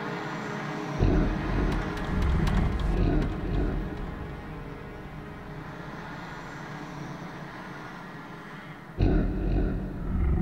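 Dark documentary soundtrack: a held drone, then a sudden deep rumble about a second in that slowly fades, with a second deep rumble surging up near the end.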